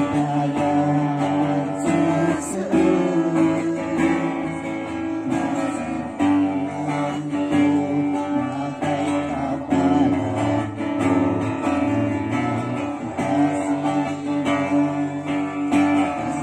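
A strummed acoustic guitar accompanying a man singing into a microphone, a slow song with long, held sung notes.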